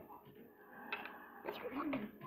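A child's voice making soft, wordless sounds, with a short falling tone near the end.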